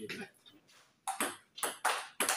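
Table tennis ball clicking off bats and the table as a rally starts in the second half: three quick, sharp ticks after a short quiet spell.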